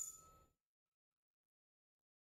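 A large weighted tuning fork struck once: a sharp tap with a brief, high ring that fades within about half a second, then near silence.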